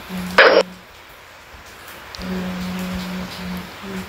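A short, sharp breathy hiss about half a second in, then a man's low, steady humming in two stretches, the longer one in the second half.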